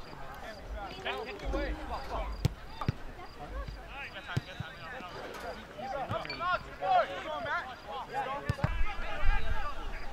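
Players calling and shouting across a soccer field while the ball is played, with several sharp thuds of a soccer ball being kicked.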